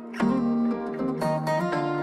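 Background music: a melody of plucked string notes.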